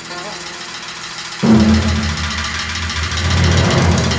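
Film score music: held tones, then a sudden loud, low entry about a second and a half in that carries on under the rest of the music.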